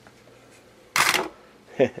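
Polymer pistol magazines tossed onto a pile of guns and magazines on a table, a short loud clatter about a second in, followed near the end by the start of a short laugh.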